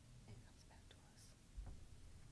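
Near silence: meeting-room tone with faint, indistinct whispering and a few small handling clicks, and a low bump about one and a half seconds in.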